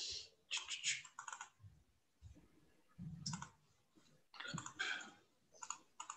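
Computer keyboard and mouse clicking in several short bursts, heard faintly over a video-call microphone that cuts to silence between bursts.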